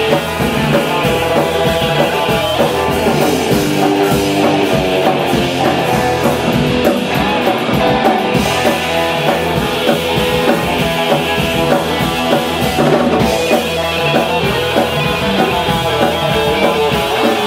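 Live instrumental surf punk: two electric guitars, electric bass and drum kit playing at full volume through a club PA.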